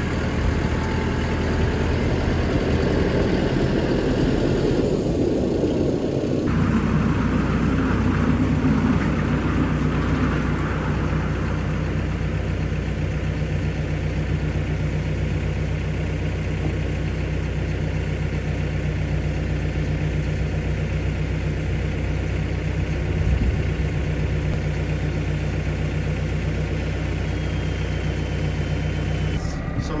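A Massey Ferguson tractor's diesel engine running. It is louder and busier for about the first six seconds, then settles to a steady idle.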